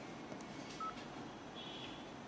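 Faint room tone with two brief electronic beeps: a short single tone a little under a second in, then a short, higher, several-tone beep near the end.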